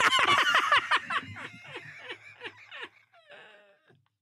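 Men laughing hard: a quick run of short cackles, each dropping in pitch, about five a second, that fades away into a faint wheeze near the end.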